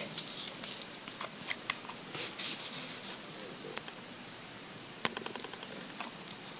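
Faint handling sounds of nail-stamping supplies: small scattered clicks and light rustles as a metal stamping plate and a polish bottle are handled on a paper towel, with a quick run of light clicks about five seconds in.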